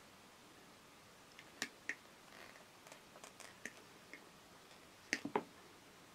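Side cutters snipping through the PVC outer sheath of twin and earth cable: a scatter of small, quiet clicks and snips, the loudest pair about five seconds in.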